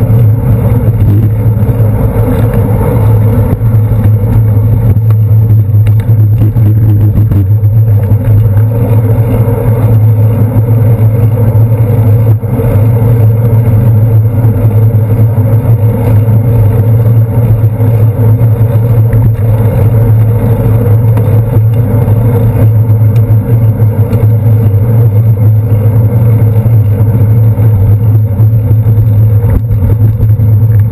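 Riding noise from a bicycle's handlebar-mounted GoPro Hero 2 moving through city traffic: a loud, steady low drone of road vibration and wind on the camera, with car and bus engines mixed in.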